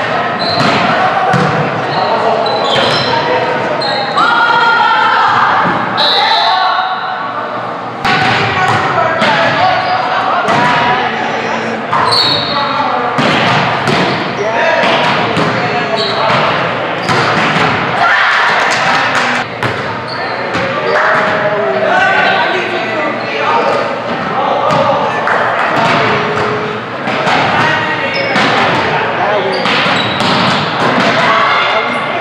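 Indoor volleyball play in a gymnasium: a scattering of sharp smacks and thuds as the ball is hit and lands, with players' voices calling out in the echoing hall.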